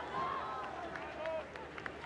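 Several men shouting and calling over one another on a football pitch, with a few short sharp knocks among the voices.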